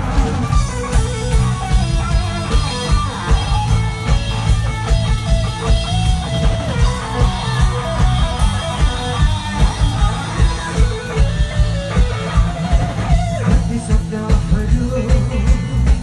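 Live rock band playing, with electric guitars over drums keeping a steady beat.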